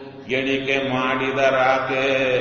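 A man's voice chanting in long, held, sing-song tones, starting again after a brief pause about a quarter second in.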